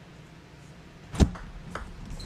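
Table tennis ball being played off the bat and table at the start of a rally: one sharp click a little past a second in, then two fainter ticks about half a second later, over low hall ambience.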